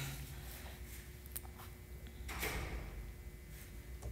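Faint handling sounds from a plastic single-serve blender cup as its blade base is unscrewed and taken off: a few light clicks, with one brief scraping rustle a little over two seconds in.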